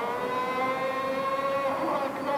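A muezzin's call to prayer from a mosque minaret: one long held sung note whose pitch sags slightly and rises again.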